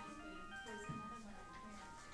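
Faint, tinny electronic melody of steady single notes, like music from a small device, playing under a quiet background murmur of voices.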